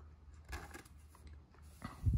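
Faint rustling and scraping as a Pokémon trading card is slid into a clear soft plastic sleeve, with a soft bump near the end.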